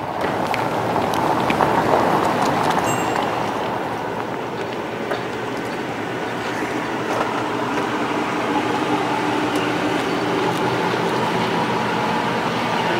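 A Chrysler 300C driving slowly over a paved stone road, its tyre and engine noise swelling to a peak about two seconds in and then holding steady.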